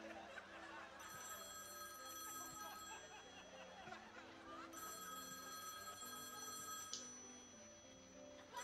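A telephone ringing twice, each ring a steady pitched tone of about two seconds with a short pause between, over soft background band music.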